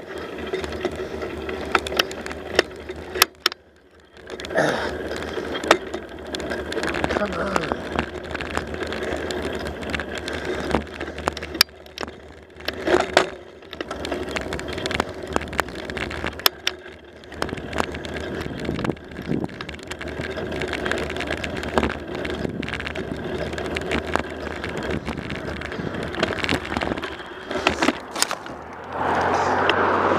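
Bicycle rolling along a paved road: steady tyre and wind noise with frequent sharp clicks and rattles from the bike. The wind on the microphone grows louder near the end.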